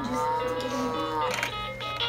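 Electronic play panel of a VTech Sit-to-Stand baby toy playing a recorded cow moo, one long call of about a second and a half, set off by the baby pressing its buttons. A few short electronic toy chime notes follow near the end.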